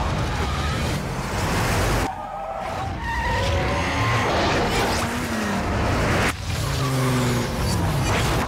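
Film action soundtrack of a car chase: engines revving hard and tyres skidding, with engine notes that slide down in pitch. The sound cuts abruptly about two seconds in and again just after six seconds.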